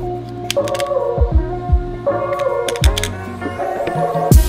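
Instrumental background music with a steady drum beat and a repeating melody.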